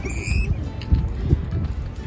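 Rumbling wind and handling noise on the phone's microphone as the camera swings around, with a short high-pitched sound in the first half second.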